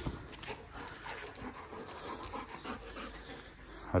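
German shorthaired pointer panting in short, quick breaths.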